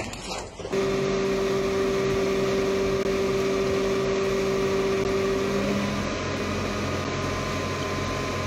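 A few short knocks, then a steady mechanical hum with a constant whine in it. Part of the whine drops out about six seconds in.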